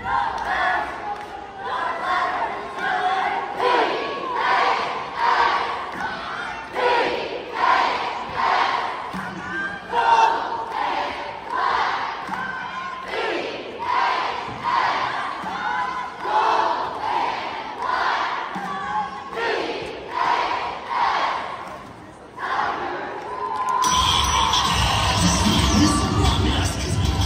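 A cheerleading squad shouting a chant in unison, in a steady, rhythmic beat of syllables. About two seconds before the end, loud recorded music with a heavy bass beat cuts in.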